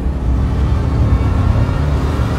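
Loud, deep droning rumble from a film soundtrack, with held low tones of the score under it.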